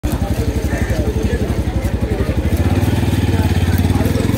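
A small engine idling with an even, rapid putter, a little stronger in the second half.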